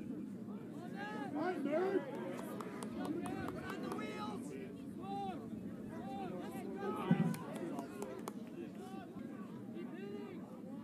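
Many voices shouting and calling at once across a rugby pitch: players and sideline calling out during open play, with one louder low shout about seven seconds in.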